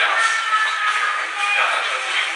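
Loud, shrill sound from a shaking handheld camera while walking: music mixed with shuffling and handling noise, thin with no bass.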